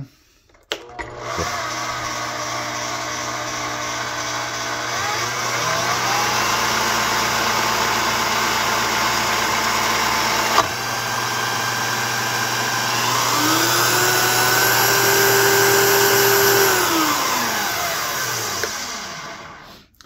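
Klutch two-speed digital drill press motor starting and running with a steady gear whine that rises in pitch twice as the speed is turned up. It holds at its highest pitch, then winds down and stops near the end, with a single click about halfway. The whine sounds like straight-cut gears.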